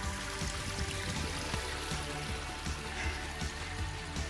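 Small stream trickling over rocks, with quieter background music underneath.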